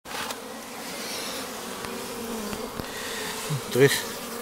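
Honeybees buzzing at the entrance of a wooden hive: a steady hum that wavers in pitch.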